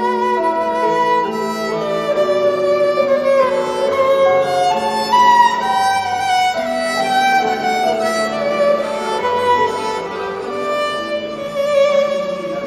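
Acoustic violin playing a slow bowed melody, one note after another. Beneath it runs an accompaniment of sustained low bass notes that change every couple of seconds.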